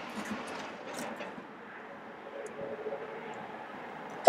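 Faint, steady background noise with a faint hum about halfway through, most likely the idling truck and open-air ambience.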